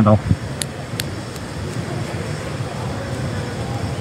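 Steady, even background hiss with no pitch, with two faint clicks about half a second and a second in.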